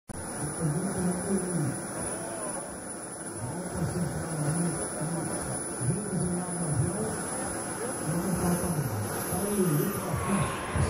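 A voice talking indistinctly throughout, over a faint steady drone from a display aircraft's engine and a thin high steady whine.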